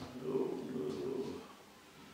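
A man's low, drawn-out hesitation hum, lasting about a second and a half, as he searches for a word.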